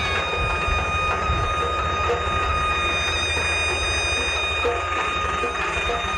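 Wind buffeting a moving microphone over a low vehicle rumble, with a steady high-pitched tone and its overtones held throughout.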